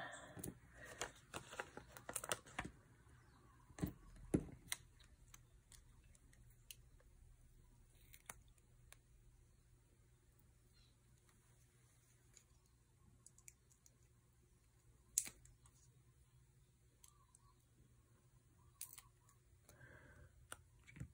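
Near silence with scattered light clicks and taps of small paper pieces and tools being handled on a tabletop. The clicks are busiest in the first couple of seconds, with two louder knocks about four seconds in and a single click about fifteen seconds in.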